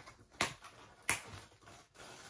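Two sharp clicks less than a second apart, from fingers working at the packing tape on a cardboard box, with a few fainter ticks.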